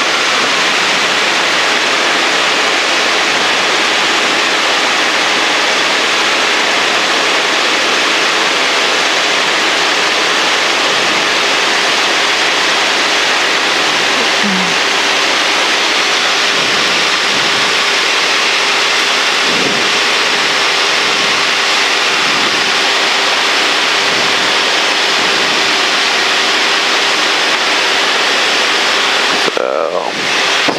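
Light aircraft in flight on its landing approach: a loud, steady rush of airflow, with the engine and propeller holding one constant note underneath.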